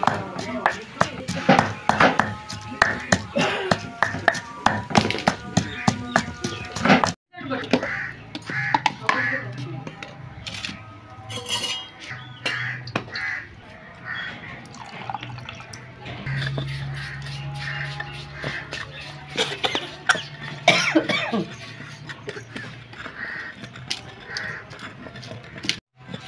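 A wooden pestle pounding mint and green chillies in a large stone mortar, with repeated knocking strikes for the first several seconds. After a brief break about seven seconds in, the pounding continues wetter as liquid is worked into the chutney. Music plays underneath.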